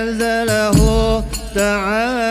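Hadroh qasidah: a lead voice sings long, ornamented wavering notes over the strokes of rebana frame drums and a low, steady bass.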